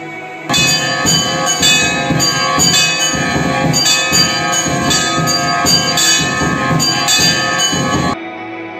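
Hanging temple bell rung repeatedly by hand, about two strokes a second, each stroke ringing on into the next. It starts about half a second in and cuts off abruptly at the end.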